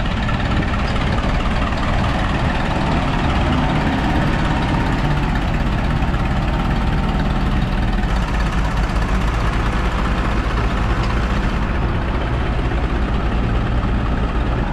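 Engines of a vintage Fordson tractor and a Mercedes flatbed low loader running steadily as the tractor pulls the low loader out of wet ground on a tow rope.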